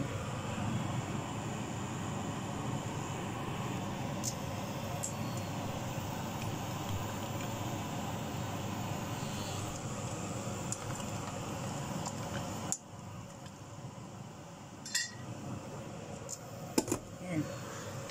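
Steady rushing noise of a pot being heated on the stove, which cuts off suddenly about two-thirds of the way in. A few light clinks of utensils against cookware follow near the end.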